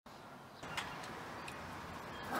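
Outdoor residential street ambience: a steady faint rumble of distant traffic, with two short sharp clicks about a second apart.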